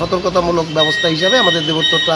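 A man speaking, with a steady high-pitched electronic tone, like a beeper or alarm, sounding behind his voice from under a second in.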